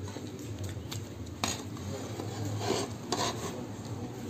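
A ladle scraping and knocking against the inside of a kazan as stewed potatoes and vegetables are scooped out, with sharper scrapes about one and a half and three seconds in. A steady low hum runs underneath.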